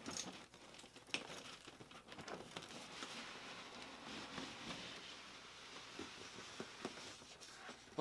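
Faint rustling and scraping of cardboard as an outer shipping box is slid up off the inner box, with scattered light taps and a steadier rustle in the second half.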